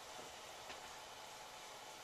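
Very quiet steady hiss of room tone, with no distinct sound standing out from it.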